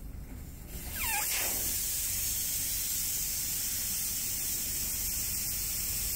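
Air hissing steadily out of an off-road tyre's valve as the tyre is aired down to a lower pressure for off-road driving. The hiss starts about a second in, just after a brief falling squeak.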